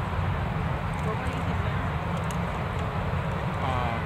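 A steady low rumble, with faint voices of onlookers talking near the end.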